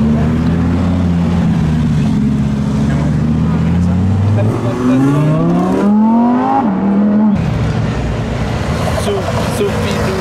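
Audi R8 V10 engine running at low revs, then accelerating hard. Its pitch climbs steadily from about four and a half seconds in, with a brief drop at an upshift, before the sound cuts off abruptly just past seven seconds.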